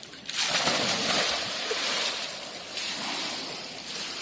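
Two people falling together into a swimming pool: a loud splash about a third of a second in, then water churning and splashing around them as they move about at the surface, easing off slightly after about two seconds.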